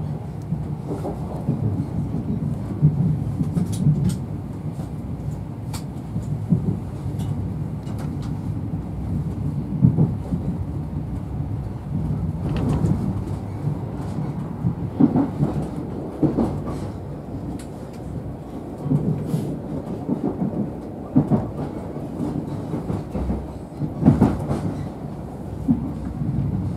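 Inside a moving InterCity 125 (Class 43 HST) Mark 3 passenger coach: a steady low rumble of the wheels running on the rails. Irregular knocks and clatter come from the track passing beneath, about one every one to three seconds.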